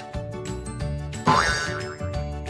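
A cartoon-style boing sound effect, one quick upward-sweeping twang about a second in, over light background music with a steady beat.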